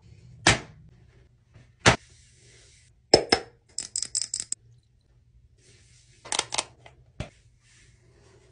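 Handling noise: a series of sharp clicks and knocks, with a quick run of them about four seconds in, and brief rustling in between.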